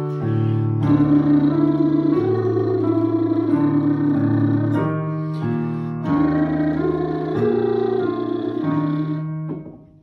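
Digital piano playing sustained chords that step through three reference notes, while a man's voice sings a buzzing lip trill along with them as a vocal warm-up. The sound dies away near the end.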